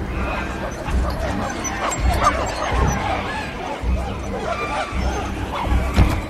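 Film soundtrack of a group of apes hooting and screaming in many short calls, over dramatic music with repeated low pulses.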